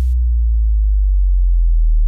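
A single deep electronic bass note held steady and loud, the closing sub-bass of a full-bass DJ house remix; the higher layers of the track cut out just after it begins, leaving the bass alone.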